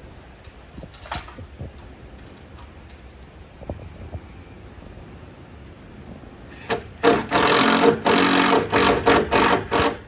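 A small motor buzzing loudly in a quick run of short bursts, starting about seven seconds in, after a faint background with a few soft clicks.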